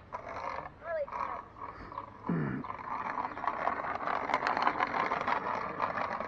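Hoverboard and small kick-scooter wheels rolling over a concrete driveway: a rough rolling noise with scattered clicks that grows louder as it approaches. About two seconds in comes a short call that falls steeply in pitch.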